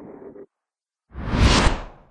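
A whoosh transition sound effect: one burst of rushing noise that swells and fades over about a second, between stretches of dead silence.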